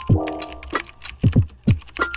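Keyboard-typing sound effect, a run of quick clicks, played as on-screen text types out, over electronic music with deep bass drum hits.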